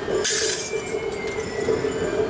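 Metal rings of a ringed iron staff (kanabō) jangling as it is carried and struck on the road, most strongly about a quarter to half a second in. A steady hum sits underneath.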